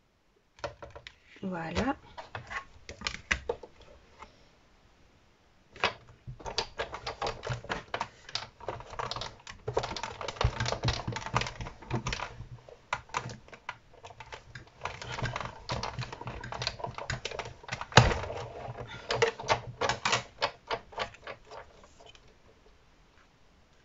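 Sizzix Big Shot die-cutting and embossing machine being hand-cranked, a dense run of clicks and creaks as the plates and 3D embossing folder roll through. There is a pause about four seconds in, and a sharp knock about eighteen seconds in.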